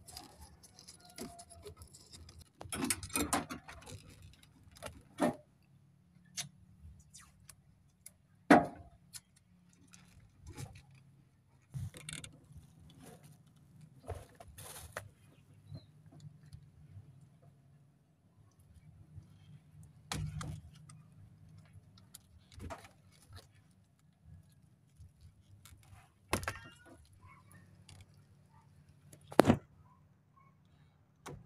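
Hands working a vehicle wiring harness at the ignition switch with pliers: scattered clicks, rustles and small metallic snaps of wires, connector and tool being handled. The loudest snap comes about eight seconds in and another near the end.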